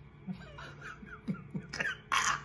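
A man's soft laughter: quiet at first, then a few short breathy chuckles that grow louder near the end.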